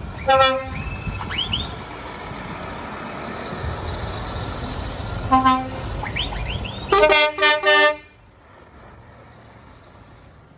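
Truck air horns sounding as lorries drive past: a short blast about half a second in, another just after five seconds, and three quick toots just before eight seconds. Rising whistle-like glides and a low diesel engine rumble fill the gaps. The sound drops suddenly to a faint background after about eight seconds.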